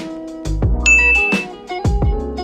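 Intro music with a beat, and a single bright 'ding' sound effect about a second in, held for under half a second: the notification chime of an animated subscribe-button and bell click.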